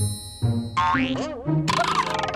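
Springy cartoon "boing" sound effects with a pitch that wobbles up and down, made as noises by the noise-making robot, ending in a quick run of clicks.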